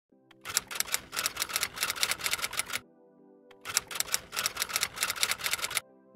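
Quick typewriter-style typing clicks, about eight a second, in two runs of a couple of seconds each with a short break about three seconds in, over faint sustained background music.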